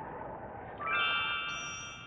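A bright electronic chord sting, a stack of steady high tones, enters a little under a second in. A higher tone joins about halfway through and the chord fades toward the end, over a soft tape hiss.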